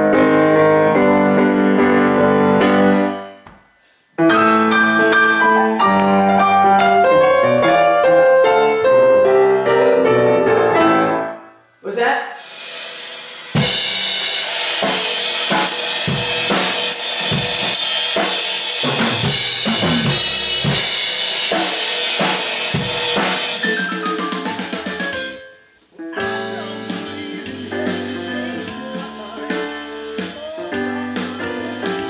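Grand piano being played in phrases, broken by a short stop about four seconds in. After another break a drum kit and band play loudly with cymbals for about twelve seconds, then cut off, and music starts again near the end.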